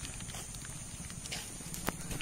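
Faint footsteps of someone walking on a paved road, with low wind rumble on the microphone and a sharper click near the end.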